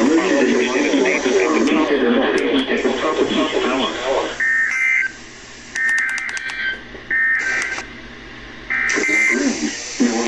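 NOAA Weather Radio broadcast voice through a small receiver's speaker. About four seconds in, it gives way to four short bursts of warbling two-tone data, the SAME header tones of an Emergency Alert System test, with quiet gaps between the bursts.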